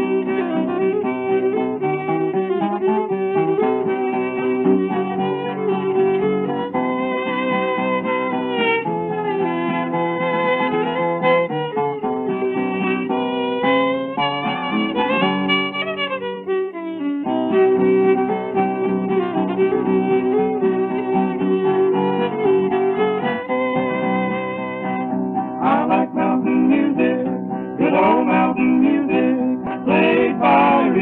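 Instrumental break of an early-1930s string-band 78 rpm recording: fiddle carrying the melody with slides over strummed acoustic guitar. The old recording is dull, with no treble, and the music thins briefly about halfway through.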